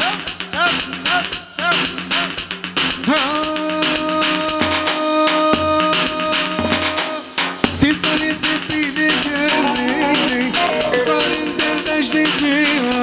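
Live band dance music with fast, steady drumming under a melody; a single long note is held from about three seconds in until about seven and a half seconds, then the melody resumes.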